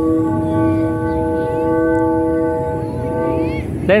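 The flutes of a Vietnamese flute kite (sáo diều), driven by the wind, sounding several steady tones at once like a held chord, over a low rush of wind. The tones fade shortly before a shouted word at the very end.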